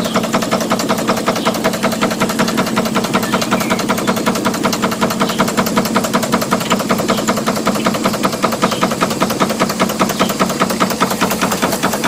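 Stuart 5A steam engine running steadily, its beats coming rapid and even, many a second, with no let-up.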